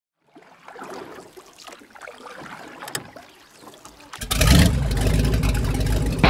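Motorboat engine running with water noise, growing suddenly much louder about four seconds in.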